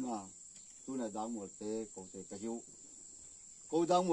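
A steady high-pitched insect drone throughout, heard behind a man talking in short phrases with pauses.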